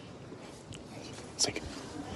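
A single short, sharp click about one and a half seconds in, over faint room noise.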